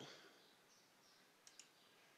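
Near silence after the recited voice fades out, broken by two faint computer mouse clicks in quick succession about one and a half seconds in.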